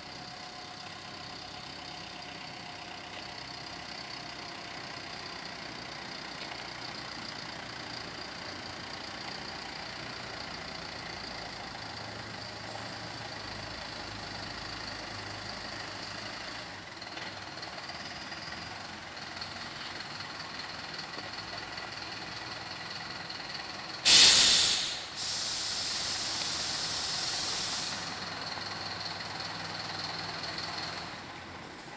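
Comil Piá minibus engine idling steadily with a faint high whine. Near the end a loud sudden blast of air and then about three seconds of hissing, the air brake system venting.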